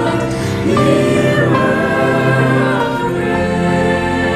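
Virtual choir of men and women singing together in harmony, holding long notes.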